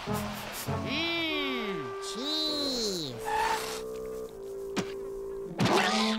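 Cartoon music score with swooping sound effects that rise and fall in pitch, a sharp click about five seconds in, and a noisy whoosh near the end.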